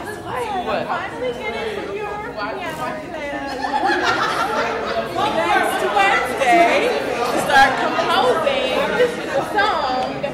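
Several people talking at once: an overlapping chatter of voices, a little louder in the second half.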